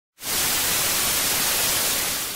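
Analogue TV static sound effect: a steady hiss of white noise that cuts in a moment after the start.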